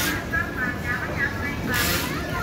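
Busy street ambience: voices of people around and traffic noise, with a brief rush of hiss right at the start and again near the end.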